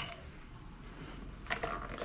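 A spoon clicks once against a small bowl of mashed avocado, then there is quiet kitchen background, and about a second and a half in there are light handling clatters and rustles as items are moved on the counter.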